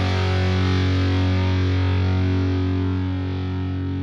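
Final chord of a metal song: a heavily distorted electric guitar chord held and left to ring, steady in pitch and slowly fading from about three seconds in.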